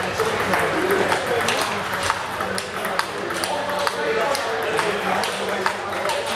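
Table tennis balls clicking sharply and irregularly off rubber-faced bats and the table tops in rallies, over a background of voices.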